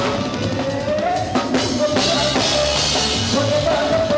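Live band music: a drum kit playing with bass drum and rimshots under a keyboard melody, with a cymbal wash ringing for about a second from about two seconds in.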